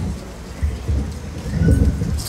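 Low rumbling and rustling handling noise from a microphone as it is moved and set back on its stand.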